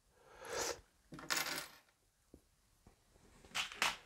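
Small plastic building-brick pieces tipped from a hand onto a tabletop, clattering in a few short spells, with a cluster of sharp clicks near the end.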